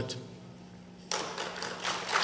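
A low steady hum and the hall's echo dying away, then about halfway through scattered claps start: the beginning of audience applause.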